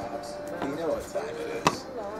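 A faint voice in the background, with one sharp click or tap near the end.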